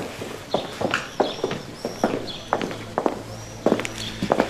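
Footsteps of people walking on a street, a series of uneven steps.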